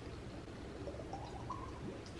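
Two people drinking small glass bottles of juice shots: faint swallowing, and a brief faint hum-like tone a little after a second in, over quiet room tone.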